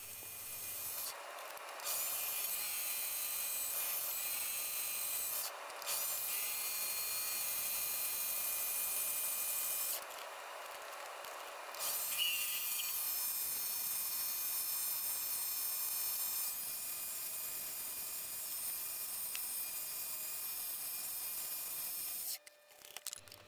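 Chinese mini lathe running: a steady motor and spindle whine with high, even overtones, while the spinning aluminium handle is turned and polished with a rubbing hiss. The sound falls away briefly three times, longest about ten seconds in.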